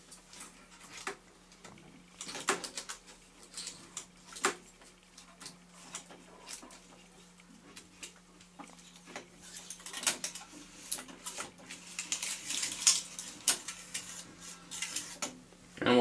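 Hands threading tape on an AKAI 4000DS MK-I reel-to-reel recorder: scattered small clicks and taps from the reels and tape path, with busier rustling and handling noise near the end. A steady low hum runs underneath.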